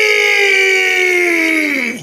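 One person's voice holding a single long drawn-out call that slowly falls in pitch and breaks off near the end.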